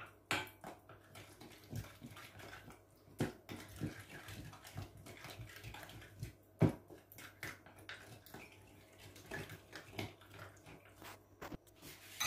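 Wooden spoon stirring a thick yogurt-and-spice marinade in a glass bowl: faint, irregular wet squelching with light knocks and scrapes of the spoon against the glass, a few of them sharper.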